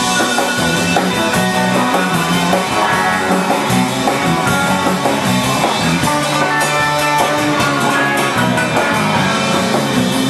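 Live rock band playing loudly and without a break: electric guitars over a drum kit.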